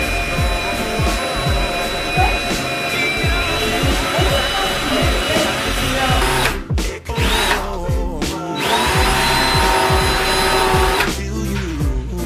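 Power drill driving screws through a wooden wall shelf into the wall studs, a steady whine that stops twice a little past halfway and spins back up with a rising pitch. Background music with a steady beat plays throughout.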